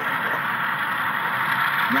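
HO scale model train running with a steady, even whirring noise close to the microphone. Faint voices sit underneath.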